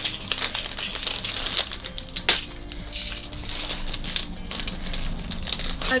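Handling and opening a small jewellery package: rustling and crinkling of the wrapping with a scatter of sharp clicks and light clinks from the necklace inside, the sharpest click a little over two seconds in.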